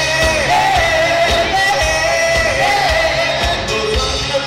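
Live pop-rock band playing: a lead singer's sung melody over electric guitars and drums.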